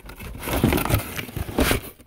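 Plastic packaging of a sheet set rustling and crinkling as it is handled close to the microphone, with irregular soft bumps of handling noise.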